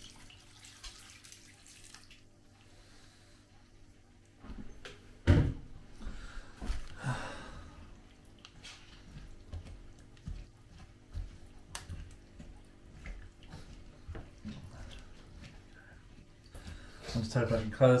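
Kitchen worktop handling sounds: scattered light knocks and clicks of containers and utensils, with a louder thump about five seconds in. A short rush of running water comes about seven seconds in.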